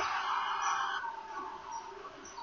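Faint, short bird chirps in the background, over a soft breathy hiss that fades away over the first second.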